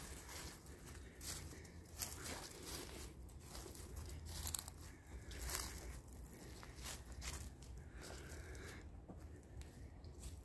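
Footsteps through dry fallen leaves: faint, irregular crunches and rustles, about one a second.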